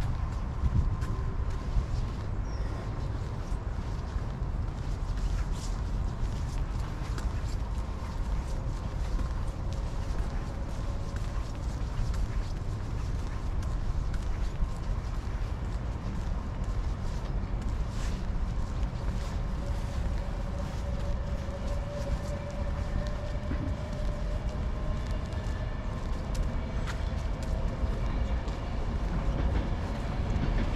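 Footsteps on paving while walking, with many short clicks throughout, over a steady low rumble of city traffic. A faint held tone comes in about two-thirds of the way through.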